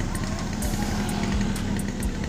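Vehicle engines idling, a steady low drone over street traffic noise.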